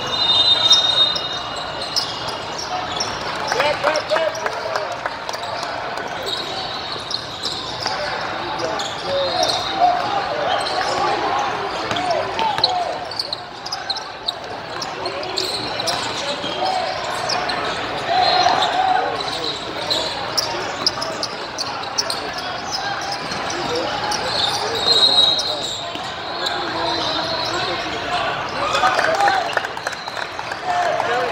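Basketballs bouncing on a hardwood-style court with a steady babble of players' and spectators' voices echoing in a large indoor hall, and brief high sneaker squeaks now and then.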